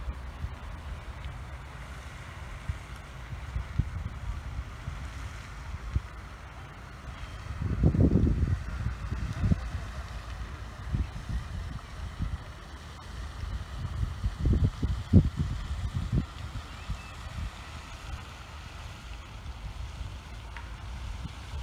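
Wind buffeting the microphone in uneven low gusts, strongest about eight seconds in and again around fifteen seconds, over a steady faint outdoor hiss.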